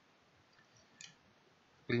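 A single short click about a second in, from the computer being used to work the trading chart, as the hand-drawn lines are cleared from it. Otherwise near silence, with a man's voice starting right at the end.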